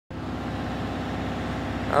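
An engine running steadily at idle, with a low even throb.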